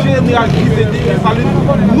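Speech only: a man talking in Haitian Creole, repeating the word "nous".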